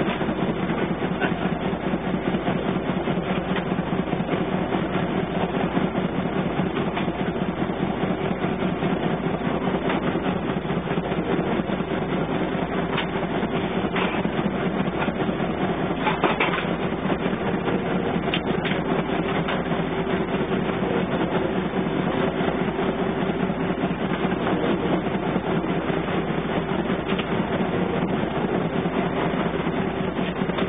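A ship's Wichmann 3ACA three-cylinder two-stroke diesel running steadily under way at good speed, heard from the wheelhouse. A wave slaps against the bow about halfway through.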